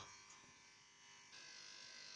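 Faint, steady buzz of corded electric hair clippers, barely above silence, stepping up slightly in level partway through.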